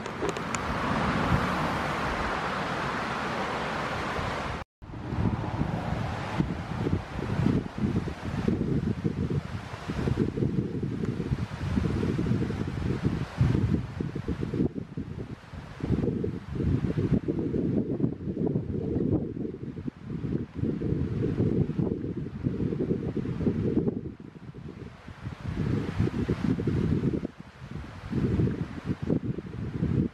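Gusty wind on the microphone: a low rumble that keeps swelling and dipping. For the first few seconds there is a steadier rushing hiss, which cuts off abruptly.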